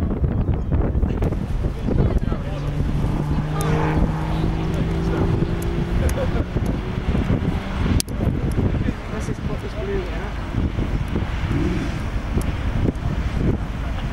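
Lamborghini Gallardo's V10 engine running hard as the car drives past on a race track, heard from the trackside with wind noise on the microphone.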